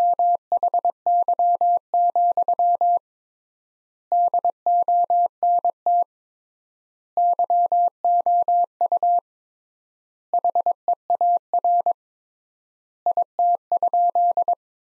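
Morse code sent as a computer-generated steady beep at 22 words per minute, keyed in rapid dots and dashes. Five word groups with pauses of about a second between them (triple word spacing) spell out the sentence 'Why, don't you hear it?'.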